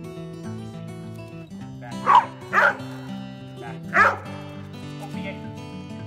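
A dog barking three times: two sharp barks about half a second apart around two seconds in, then one more about a second and a half later. Acoustic guitar music plays throughout underneath.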